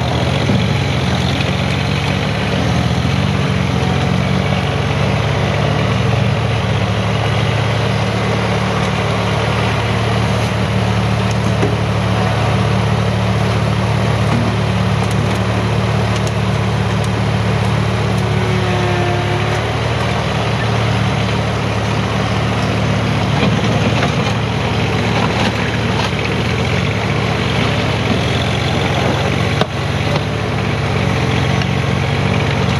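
Mahindra compact tractor's diesel engine running steadily while its front loader scoops and dumps dirt.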